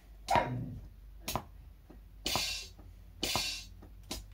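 Electronic hi-hat samples triggered from a MIDI keyboard and played through studio monitors: four hits about a second apart, one bar of quarter notes at 60 BPM. The last two are longer, hissy strokes.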